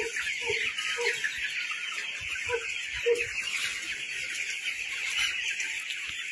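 A large flock of young broiler chickens peeping continuously in a dense, high-pitched chorus, with a few short lower calls in the first three seconds.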